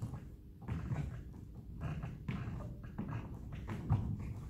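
Hands and trainers patting on a wooden sports-hall floor as a man walks on all fours in a bear walk: a run of soft thuds, about two to three a second.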